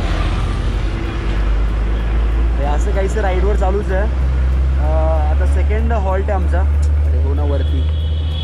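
A man talking, muffled inside a full-face helmet, over a steady low rumble.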